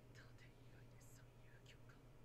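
Near silence: a few very faint voices, too quiet to make out, over a low steady hum.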